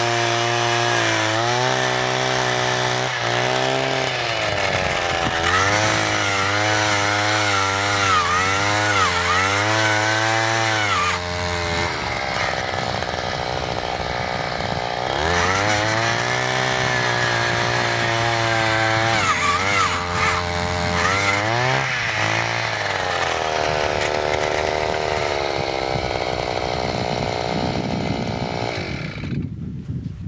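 Engine of a gas-powered ice auger running under load while drilling through lake ice. Its pitch sags and recovers several times as the bit bites, and it shuts off near the end.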